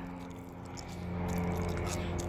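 A steady low hum of several held tones over a faint hiss, a little louder from about a second in.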